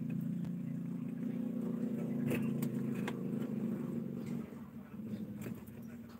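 A low, steady engine-like hum that fades out about four and a half seconds in, with a few sharp clicks over it.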